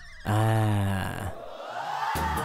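A man's voice calling a long, drawn-out "aaa" to coax a dog over, falling slightly in pitch and fading after about a second.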